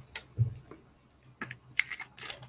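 Scattered light clicks and plastic crackles from a plastic water bottle being handled and its screw cap twisted open, with a low knock about half a second in and the sharpest clicks near the end.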